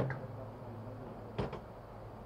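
A pause with a low, steady hum in the room, broken by a single short knock about a second and a half in.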